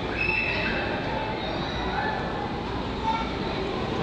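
Steady background noise with a low rumble and hiss, and a few faint, short high-pitched tones in the first second.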